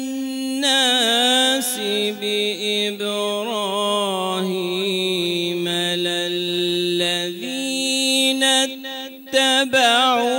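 A solo male voice reciting the Quran in the melodic mujawwad style. He holds long drawn-out notes ornamented with quick pitch turns, drops to a lower note about two seconds in, climbs back up near the seven-second mark, and pauses briefly for breath just before the end.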